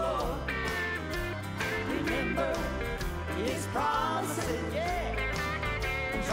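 Country-style gospel music with guitar over a steady bass line, a melody gliding in pitch above it.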